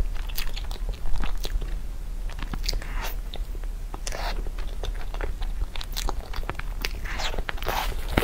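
Close-up chewing and wet mouth sounds of a soft taro paste crepe being bitten and eaten, with many small irregular sticky clicks of lips and tongue. A tissue rustles near the end.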